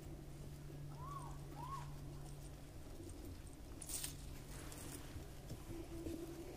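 Faint outdoor evening background with a steady low hum. There are two short chirping calls a second or so in, and a brief sharp hiss or crackle about four seconds in.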